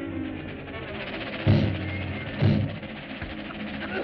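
Orchestral score of a 1930s cartoon playing, with two heavy low thumps about a second apart near the middle.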